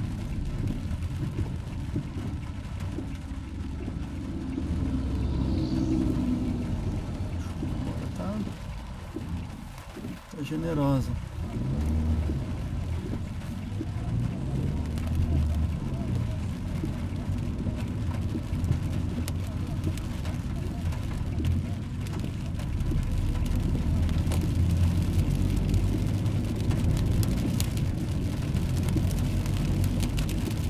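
Car cabin sound while driving on a wet road: the engine and tyre hiss run steadily, with the engine note dipping and then climbing again about ten seconds in.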